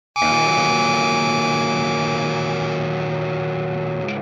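Music: a single electric guitar chord struck once, run through effects and left to ring, slowly fading.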